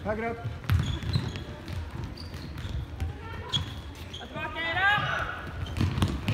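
Indoor football play on a sports-hall floor: thuds of running feet and the ball being kicked, with short squeaks and voices calling out, echoing in the hall.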